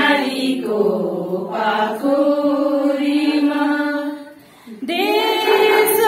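A group of women singing together in slow, long held notes, with a short pause for breath about four seconds in before the next line starts.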